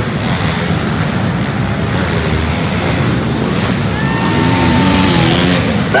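Several small four-stroke pit bike engines revving and buzzing as they race around an indoor dirt track, sounding continuously with rising and falling pitch.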